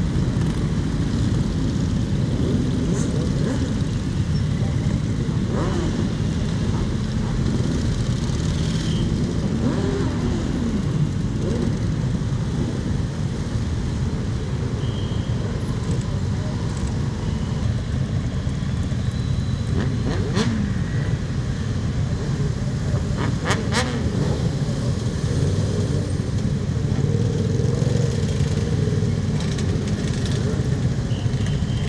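A large group of motorcycles, cruisers and sport bikes, riding slowly past in a procession, engines running at low revs in a dense, steady rumble, with a few short revs that rise and fall.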